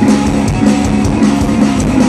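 Live rock band playing loudly: electric guitars over a drum kit, with steady driving drum hits.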